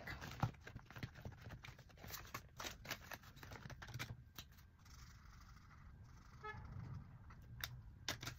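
Faint rustling and clicking of clear plastic binder sleeves and paper dollar bills being handled as bills are slipped into the binder's pockets.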